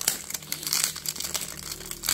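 Crinkling and rustling of packaging being handled, an irregular run of small crackles throughout.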